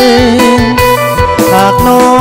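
Instrumental passage of a Lao pop song: a held lead melody over bass and a steady drum beat, with no singing.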